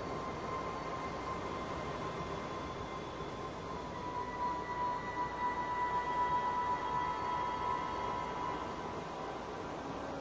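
Roland System-1 synthesizer playing slow ambient music: long held high notes over a steady rushing noise, the top note swelling louder through the middle and easing off near the end.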